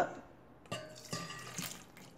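Water with soaked dates poured from a glass into a stainless steel pot, splashing onto the bare metal bottom; the pour starts a little under a second in.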